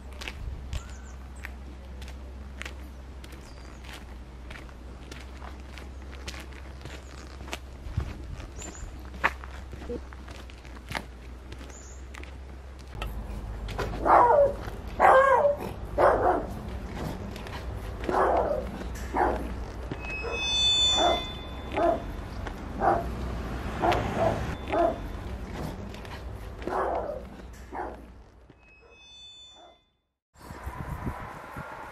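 Footsteps on a paved lane, a steady run of steps through the first half. From about halfway through, a dog barks over and over for more than ten seconds; the barks are the loudest sounds.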